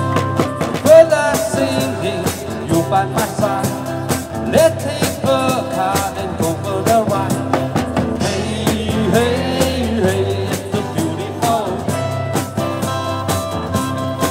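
Live band playing upbeat pop-rock: electric guitars with bending melody lines over a steady drum-kit beat.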